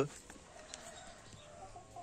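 A chicken's faint, drawn-out call: one held note of a little over a second that rises slightly near its end.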